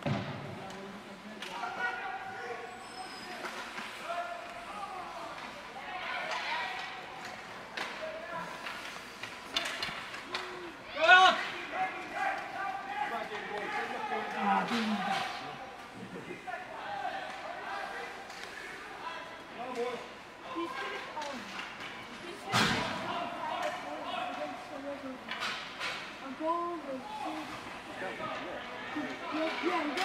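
Ice rink game sounds: spectators calling out and chattering, with scattered knocks of sticks and pucks against the boards. A loud shout comes about a third of the way in, and a hard slam against the boards or glass about two-thirds through.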